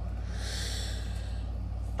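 A man's breathy exhale, a sigh lasting about a second, over a steady low hum.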